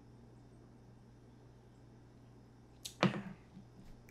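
A glass tumbler set down on a ceramic-tiled tabletop: a sharp knock about three seconds in, just after a faint tick. Before it there is only a low steady hum.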